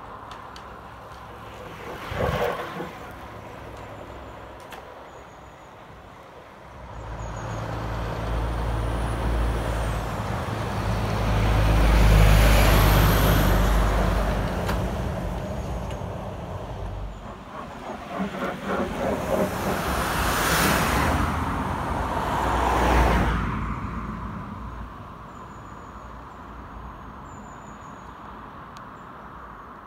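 Articulated lorry passing close by, its deep engine and tyre rumble building to a peak and fading away; a second vehicle passes soon after. A short burst of sound comes about two seconds in.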